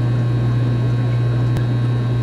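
Steady low electrical hum of running equipment, with a single faint click about one and a half seconds in.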